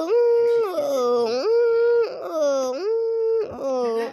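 A voice wailing in long, drawn-out cries, each held and then swinging between a higher and a lower pitch, with short breaks between them: mock crying or howling.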